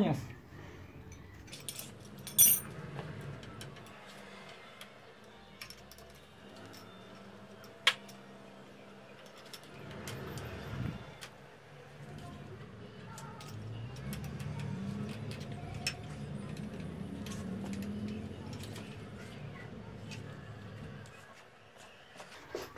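Occasional sharp metallic clicks and clinks of hand tools on the motorcycle's front-fork triple clamps as the clamp bolts are loosened. A low steady hum rises in the second half.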